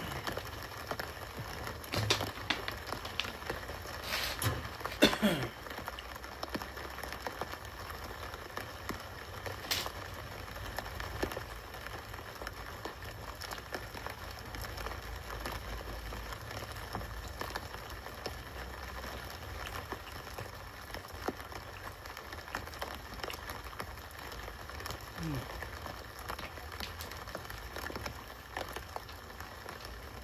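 Steady patter of rain playing from a street live stream through a speaker, with a few sharp clicks and crinkles in the first five seconds as a plastic water bottle is twisted open and handled.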